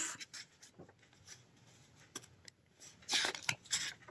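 A paperback picture book being handled: its pages and cover rustle in a couple of short bursts about three seconds in as it is closed and turned over, with faint small clicks before.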